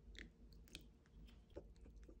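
Faint, close-miked sounds of water poured from a plastic bottle into a bowl of sauce: a soft liquid plop near the start, then a few light clicks and taps.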